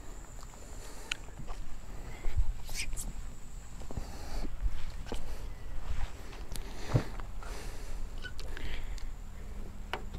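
Hand-drying a wet car with microfiber drying towels: scattered soft knocks, scuffs and footsteps as the towels are worked over the panels and spoiler, over a faint steady high-pitched tone.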